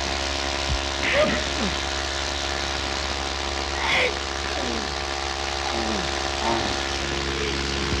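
A biplane's piston engine running with a steady drone, with several falling yells from men fighting over it every second or two.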